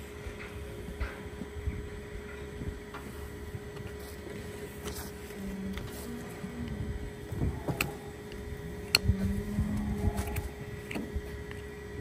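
A steady mechanical hum with low rumble, broken by a few light clicks and knocks.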